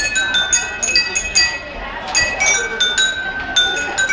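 A set of small porcelain bowls struck with chopsticks and played as a melody instrument: a quick run of clinking strikes, several a second, each ringing on with its own clear pitch, with one note left to ring longer in the second half.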